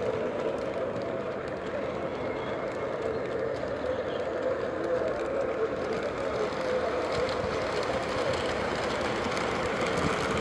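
O-gauge model train running steadily along the track: a Southern Pacific-liveried locomotive pulling streamlined passenger cars, giving a continuous, even running sound from its motor and wheels.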